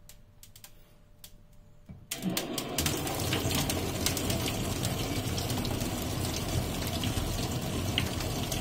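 Dry ice giving a few faint, scattered clicks. Then, about two seconds in, water hits it and it turns into a loud, steady hiss and bubbling with many small pops as the dry ice boils off carbon dioxide fog.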